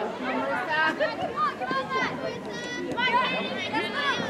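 Distant voices of soccer players and spectators calling out and chattering across an outdoor field, scattered and fairly high-pitched.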